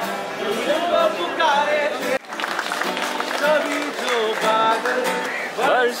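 Acoustic guitar and singing from an informal jam session, with people's voices mixed in. The sound cuts abruptly about two seconds in.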